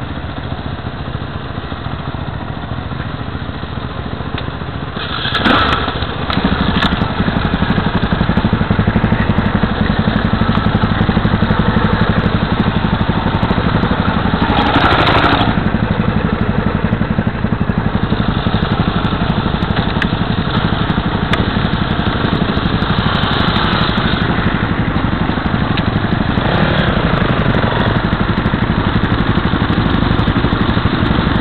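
KTM LC4 660 single-cylinder four-stroke engine running at low revs. It gets louder about five seconds in, and has a brief louder swell around the middle.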